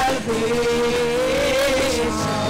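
Live church worship music: one long, slightly wavering note is held over steady lower accompaniment.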